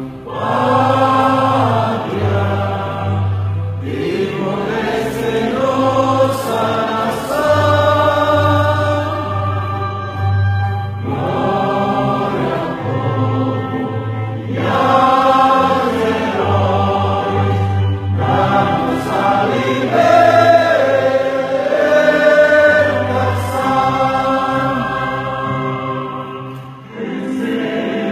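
Many voices singing together like a choir, in sung phrases a few seconds long over steady low bass notes; the sound dips and changes shortly before the end.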